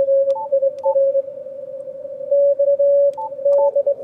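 Morse code (CW) from a weak summits-on-the-air station, received on a Yaesu FTdx5000MP: a steady mid-pitched tone keyed in dots and dashes, pulled up out of the noise by the receiver's filtering. Four short, higher beeps from the radio's front-panel buttons are mixed in, two near the start and two near the end.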